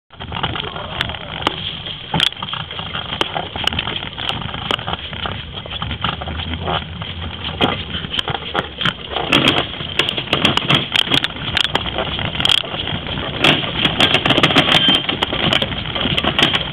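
Soapbox cart being pushed by hand, its small wheels rolling and rattling over rough asphalt with many sharp clicks.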